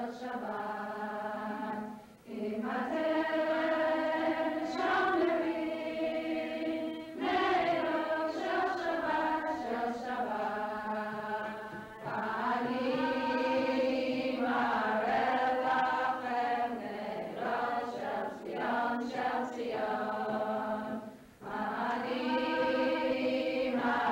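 Group of voices singing a slow, chant-like melody in long held notes that glide between pitches, with brief breaks between phrases about two seconds in, midway, and just before the end.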